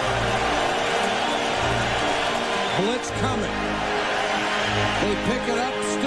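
Background music with a steady, repeating bass line, with a man's voice talking indistinctly underneath in the second half.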